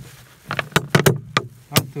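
A quick series of about six sharp knocks and clatters in a second and a half as raw chicken pieces are handled in a steel bowl.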